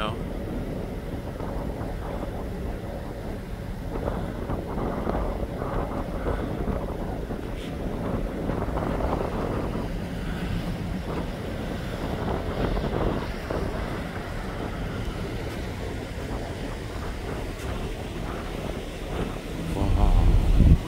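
Steady wind buffeting the microphone on a ferry's open deck, over the low, even running of the ship's engines.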